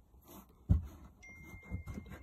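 A soft knock, then a few light clicks as the red plastic cover on the car battery's positive terminal is handled and lifted. A faint, thin, steady high tone sounds for under a second just past the middle.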